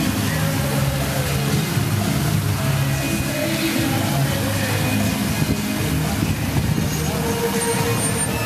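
Music accompanying a choreographed water fountain show, with the steady rush of spray from the jets underneath.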